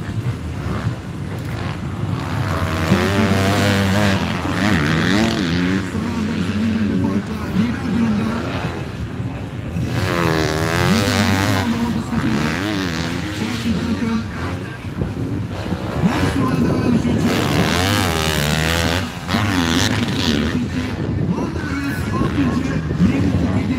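Motocross bike engines revving hard and changing gear as riders pass through the track section, the engine note rising and falling again and again over several passes.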